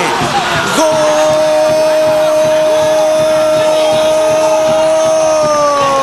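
A football commentator's long, drawn-out goal cry, held on one loud pitch for about four seconds and then sliding down near the end.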